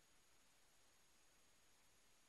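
Near silence: faint steady hiss with a thin, constant high tone.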